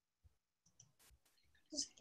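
Near silence with a few faint, short clicks, then a voice begins just before the end.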